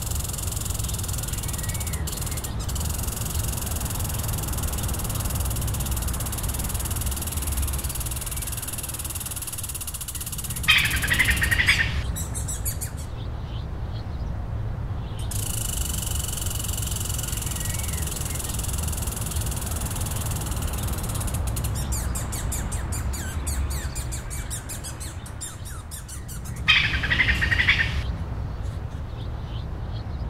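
Nature ambience of birds chirping over a steady low rumble and a steady high hiss. A louder burst of chirping comes twice, about sixteen seconds apart.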